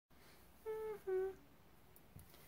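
A woman hums two short notes, the second a little lower than the first.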